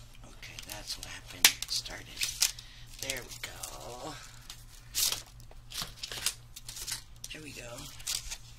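Clear plastic packaging crinkling and rustling as metal craft dies on a card backing are slid out of their sleeve, with sharp crackles now and then, loudest about a second and a half in and again near the middle.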